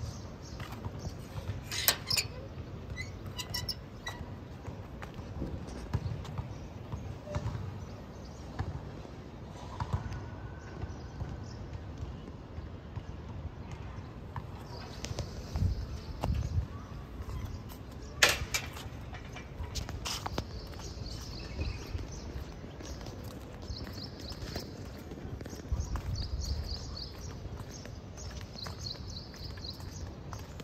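Footsteps of a person walking on a paved path, with rustle from a hand-held phone. There are two sharp clicks, one near the start and one a little past halfway, and faint high chirping through the second half.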